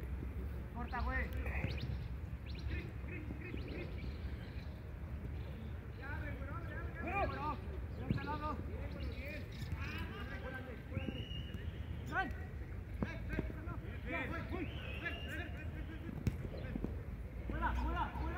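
Distant shouts and calls from footballers across the pitch, faint and scattered, over a steady low rumble.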